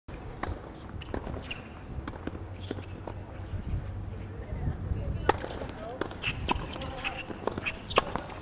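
Tennis balls struck by rackets and bouncing on a hard court during a doubles rally: sharp pops at uneven intervals, the loudest about five seconds in.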